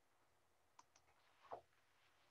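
Near silence: quiet room tone with a couple of faint clicks.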